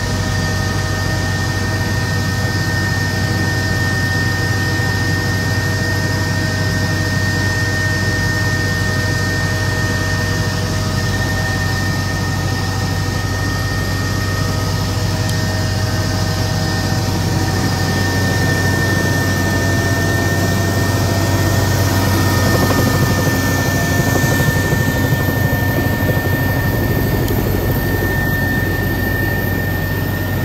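Helicopter cabin noise in flight: a steady low rotor drone with engine whine and several steady tones above it. The sound grows slightly louder about three-quarters of the way through, where a high thin whine steps up in pitch.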